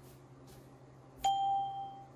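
A single electronic beep from the Flexijet 3D laser measuring system, confirming that a measured point has been taken. It is one clear, steady tone that starts a little after a second in and fades out within about three quarters of a second.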